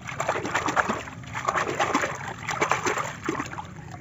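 A hand splashing and swishing a small plastic toy figure in shallow stream water, rinsing mud off it, in several uneven bouts of splashing.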